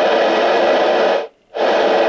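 Receiver static from the ICOM IC-271H's speaker: loud FM hiss that runs for over a second, cuts out briefly and comes back. It is the sign that the dead radio is alive again after its shorted capacitor was replaced.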